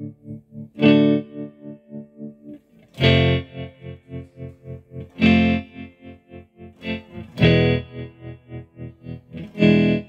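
Electric guitar chords played through a Zebra-Trem tremolo pedal, struck about every two seconds and left to ring. The pedal's rhythmic waveform chops the ringing chords into rapid, even volume pulses, about three a second.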